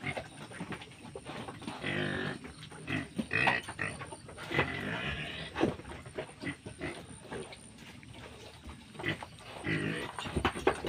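Small black piglets grunting in short bouts as they root in loose soil. The calls are busiest in the first half, then fall to scattered sounds, with another bout near the end.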